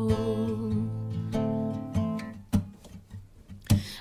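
Instrumental passage of an acoustic folk song: plucked strings over held low notes, thinning out and growing quieter in the second half to a few single plucks.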